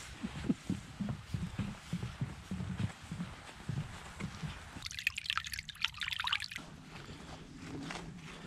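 Footsteps on the planks of a wooden footbridge, a run of irregular soft thuds, followed a little before six seconds in by a short high rustle.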